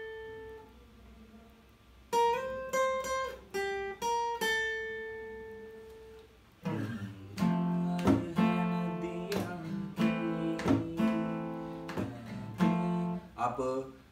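Acoustic guitar playing a short lead phrase of single picked notes high up the neck, one slid up in pitch, each left to ring and fade. About halfway through it changes to strummed chords in a steady rhythm.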